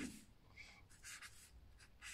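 Faint short scratching strokes of a felt-tip marker writing on paper.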